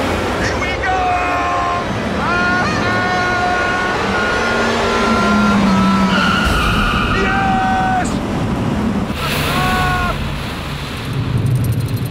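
Renaultsport Twingo 133's 1.6-litre four-cylinder engine running hard in a tunnel, over a steady rush of water spray and tyre noise. Several high tones are held for a second or two at a time.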